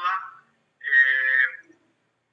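A person's voice over a narrow, call-quality line: the end of a phrase, then a single drawn-out voiced syllable lasting under a second.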